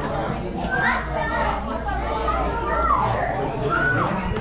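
Several children's voices calling out and chattering, high and excited, with rising and falling shouts throughout.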